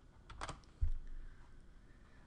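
A few keystrokes on a computer keyboard, with a dull low thump just under a second in.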